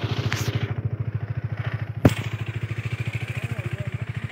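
Motorcycle engine idling with an even, rapid low putter, and a single sharp click about two seconds in.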